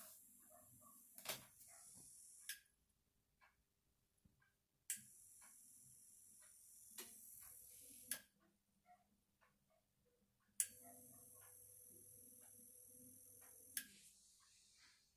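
Hornby Smokey Joe's small electric motor and worm gear whining faintly in three short runs of about three seconds each. Each run starts and stops with a sharp click and is followed by a few seconds of near silence: the motor keeps cutting out, which the owner puts down to it shorting out.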